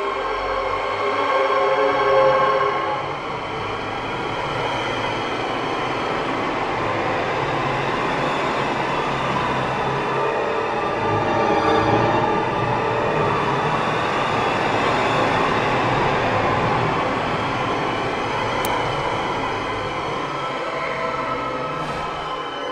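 Electroacoustic music: a dense, sustained wash of noise threaded with many held tones, swelling about two seconds in and again near the middle.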